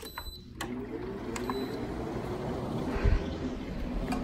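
Frigidaire through-the-wall air conditioner switched on: a short control-panel beep as the button is pressed, then the blower fan starts up, with a hiss that grows louder as it runs. A second short beep comes about a second and a half in, and a low thump about three seconds in.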